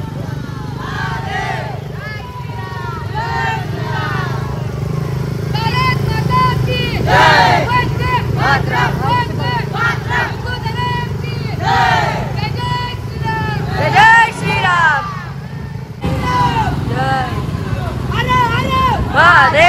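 Several motorcycle engines running steadily at low riding speed, with men's voices shouting over them, more and louder from about six seconds in.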